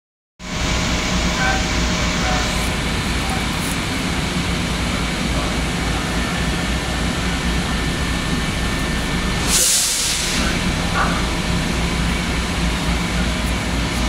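Long Island Rail Road electric train standing at the platform: a loud, steady drone with faint steady tones. A short burst of hiss comes about nine and a half seconds in.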